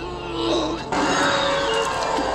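Horror-film soundtrack: a gagged man groaning through duct tape, then loud dramatic music coming in sharply about a second in and holding.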